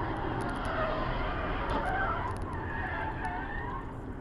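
Steady car road noise at highway speed, with a wavering tyre squeal from about half a second in until shortly before the end.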